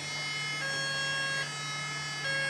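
Electronic two-tone siren of a Faller Car System model fire engine, alternating between its high and low notes about every 0.8 seconds, over a steady low hum.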